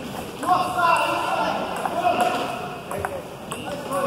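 Table tennis ball struck by bats and bouncing on the table during a rally, a few sharp clicks, two of them about three seconds in, half a second apart. Voices in the hall are heard at the same time.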